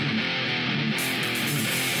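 Distorted electric guitar playing on its own in a break of a deathcore song, with the bass and drum low end dropped out. A high, hissing layer joins in about halfway through.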